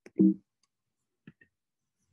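Two faint computer-mouse clicks close together about a second and a quarter in, as a presentation slide is advanced. Just before them, a brief voiced vocal sound from the presenter.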